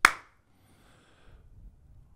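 A single sharp click made with the hands, dying away at once, then quiet room tone.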